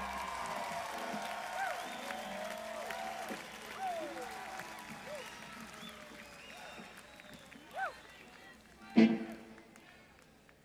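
A live concert audience cheering, whooping and applauding as the last chord of a song dies away, the crowd noise gradually fading. One short loud shout or burst cuts through about nine seconds in.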